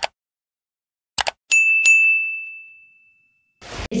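Mouse-click sound effects, heard as a double click twice, then a bright notification-bell ding struck twice that rings out and fades over about a second and a half. Near the end a short burst of noise, then a jingle starts.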